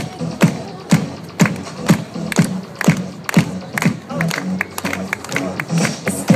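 Dance music with a steady beat of about two beats a second.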